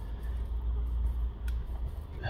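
Thin plastic opening pick working into the adhesive seam under a phone's glass back cover: faint scraping and handling noise over a low steady hum, with one sharp click about one and a half seconds in.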